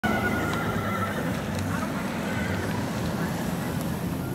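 A horse whinnying in the first second or so, over the hoofbeats of a Tennessee Walking Horse stallion coming along a paved road.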